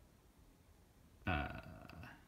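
Quiet room tone, then about a second in a short, low, wordless vocal sound from a man, held for under a second.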